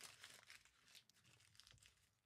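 Faint rustling and crinkling of a sheet of lined paper being folded by hand, mostly in the first second.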